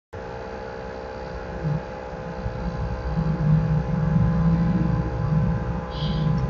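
Steady electrical-sounding hum with several evenly spaced tones over a low rumble, growing louder from about three seconds in.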